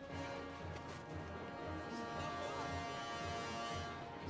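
Film soundtrack music: sustained, held chords over a low, repeated pulse.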